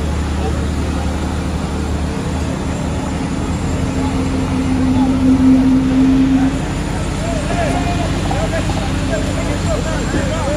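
Hydraulic excavator's diesel engine running steadily, swelling to a louder, steady drone for a couple of seconds from about four seconds in as the bucket tips wet concrete into the forms. A crowd's voices chatter and call behind it, busier near the end.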